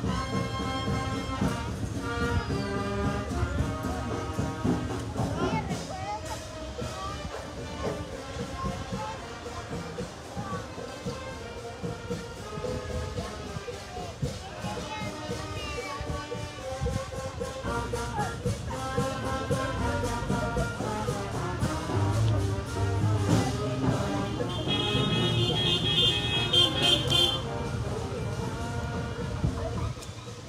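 Cimarrona brass band music playing continuously, brass instruments carrying the tune, with voices mixed in. A shrill high tone sounds for about two and a half seconds near the end.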